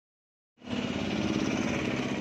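A small vehicle engine idling steadily, coming in about half a second in.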